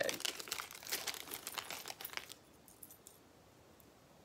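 A small bag crinkling and rustling as it is handled and a little charm is pulled out of it. The crackling stops about two seconds in.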